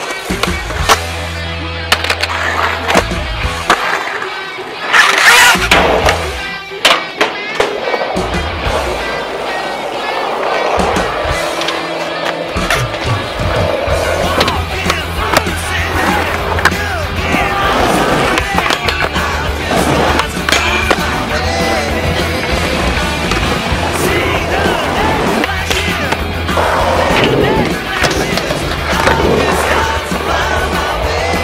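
Skateboards on concrete: wheels rolling and sharp clacks of boards popping and landing, many times over. Under them runs a music track with a steady bass line.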